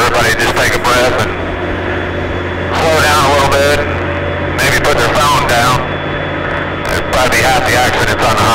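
Speech in short phrases over the steady low drone of a vehicle engine. The drone is a little stronger through the middle.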